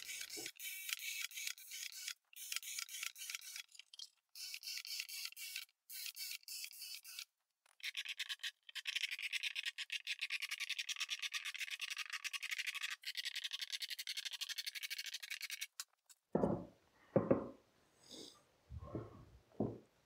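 Cordless drill boring 3/8-inch holes through a plywood panel: many short bursts of grinding one after another, then a longer unbroken stretch of drilling. The sound is thin and high-pitched. A few brief lower sounds with gliding pitch come near the end.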